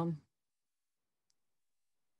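The last syllable of a woman's speech, then near silence on the call line, broken only by one faint click about a second in.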